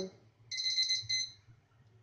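Electronic timer alarm beeping: a burst of rapid high beeps about half a second in, lasting about a second. It marks the end of three minutes of steaming on high heat.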